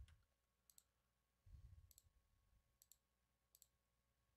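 Faint computer mouse clicks over near silence: four short clicks, the last three each a quick double click.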